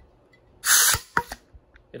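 Homemade 3D-printed HPA foam-dart blaster dry-fired by a trigger pull: a short, loud hiss of compressed air as the air piston drives the ram, then a sharp click and a couple of lighter clicks.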